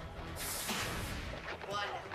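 A trailer sound effect: a sudden boom with a hissing rush about half a second in, lasting about half a second, over low background music.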